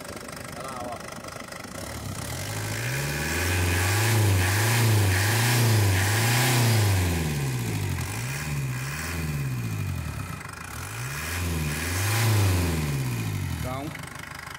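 Ford Ranger's turbocharged four-cylinder diesel engine, with its cylinder head freshly rebuilt, revved by hand at the throttle lever under the hood. It idles at first, then rises and falls through several blips of the throttle from about two seconds in, and settles back down near the end.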